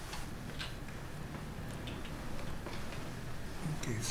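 Scattered small clicks and knocks at irregular times over a steady low room hum: people settling into chairs at a witness table.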